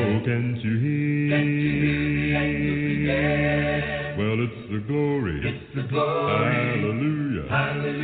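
Unaccompanied a cappella singing: long held notes, with the pitch sliding and bending between them about halfway through and again near the end.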